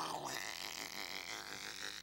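A man imitating cell phone static with his mouth: a steady, crackly hiss that stands for a call breaking up and dropping. It cuts off abruptly at the end.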